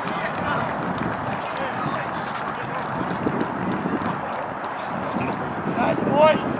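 Live field sound from an outdoor soccer match after a goal: a steady low hiss with faint distant voices and scattered light taps. A voice calls out right at the end.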